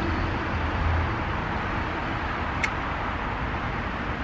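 Steady outdoor background noise with a low hum that eases about a second in, and one faint click near the middle.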